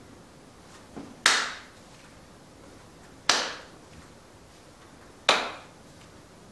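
Three sharp hand claps, evenly spaced about two seconds apart and each fading quickly, with a faint tap just before the first.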